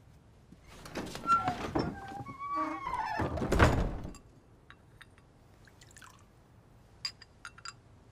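A tray with porcelain bowls set down on a wooden table: rustling and light clatter building to one loud thunk about three and a half seconds in, followed near the end by a few small clinks of porcelain.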